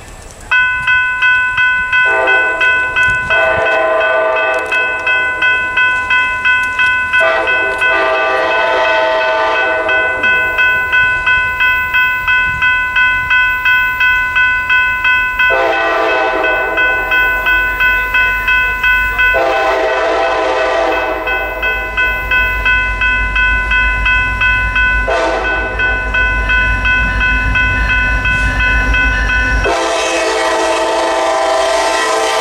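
A General Signals Type 3 electronic crossing bell starts suddenly about half a second in and rings steadily at about two and a half strokes a second, signalling an approaching train. The approaching freight locomotive sounds its horn in five blasts, the last one long and running past the end. A low locomotive rumble builds through the second half.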